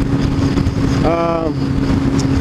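Sport motorcycle running at a steady cruising speed, a constant engine hum under wind rush on the microphone. About a second in comes a brief half-second voice sound.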